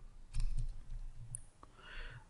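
A few faint clicks and soft low knocks from a stylus on a pen tablet as a number is handwritten.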